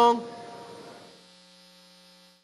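The last moment of the imam's long, sung final taslim ("as-salamu alaykum wa rahmatullah") ends just after the start. The voice then rings away in the large prayer hall, fading over about a second and leaving a faint steady hum.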